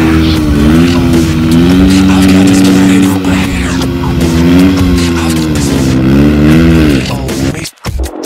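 Supermoto motorcycle engine held at high revs, rising and falling slightly, while the rear tyre spins in a smoky burnout, with music playing over it. The sound drops out briefly near the end.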